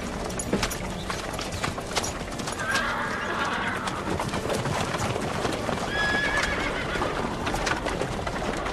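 Horses' hooves clopping irregularly, with a horse neighing about three seconds in and a shorter high call near six seconds.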